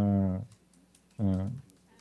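A man's voice over a video call through a headset microphone: a drawn-out word ends about half a second in, and after a short pause a brief hesitation sound follows. Faint computer-keyboard clicks sound in the pause.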